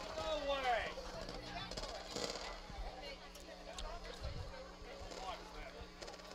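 Distant voices and shouts from players and spectators around the soccer field, loudest in the first second, over a steady low hum.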